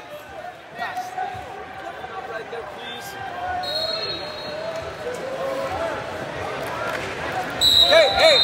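Gym crowd and distant shouting voices, with a whistle blowing twice: a shorter steady blast about three and a half seconds in, and a louder one near the end as the wrestlers square off in neutral to restart the bout.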